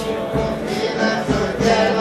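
Music with a group of voices singing long held notes.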